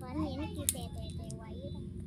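Rice combine harvester's engine running steadily, a low drone under snatches of voices talking, with one sharp click a little after half a second.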